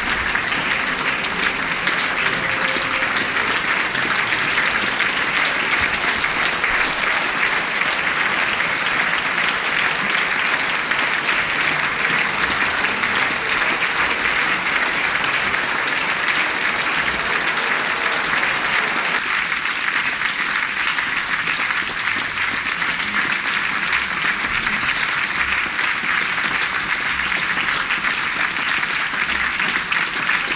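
Large theatre audience applauding at a curtain call: dense, steady clapping that holds at an even level throughout.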